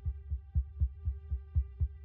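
Suspense soundtrack: a steady, heartbeat-style low thumping pulse under a held, steady drone note.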